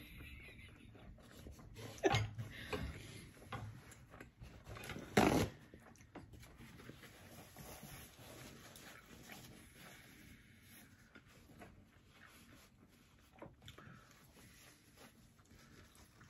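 A man blowing his nose into a paper napkin: a few short, loud nasal bursts, the strongest about two and five seconds in.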